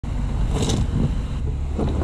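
Wind buffeting the microphone: a low, steady rumble.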